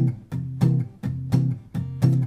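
Steel-string acoustic guitar strummed in a steady blues rhythm in C, about three strokes a second: the backing groove of a 12-bar blues.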